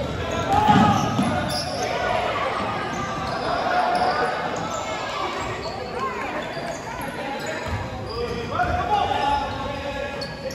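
Live youth basketball play on a hardwood gym court: the ball bouncing as it is dribbled, with voices calling out. All of it echoes in the large hall.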